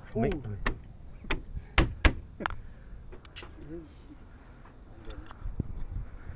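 A string of sharp clicks and knocks, the two loudest about two seconds in, from hands working the release catch of a tour bus's front access panel.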